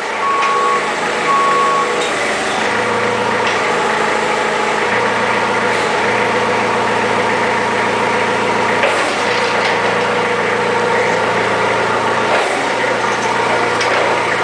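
Forklift engine running steadily at idle, with a few evenly spaced beeps from its alarm in the first two seconds.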